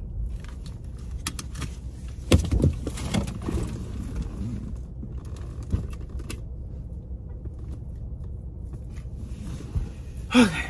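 Handling noises as someone reaches into a car's back seat to cover a purse: rustling with scattered clicks and knocks, the sharpest about two and a half seconds in, over a steady low rumble in the cabin.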